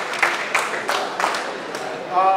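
Scattered applause from a small seated crowd: a few hands clapping irregularly, thinning out.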